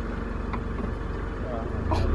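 Car engine idling steadily, a low even hum, with a short exclaimed "oh" near the end.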